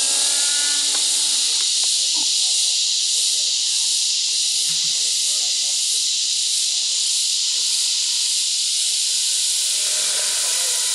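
Align T-Rex 600 nitro RC helicopter in flight: its engine and rotor tone sounds for about the first second, then drops to a faint low drone, as in an autorotation descent with the engine throttled back. A steady high hiss runs under it and is the loudest thing heard.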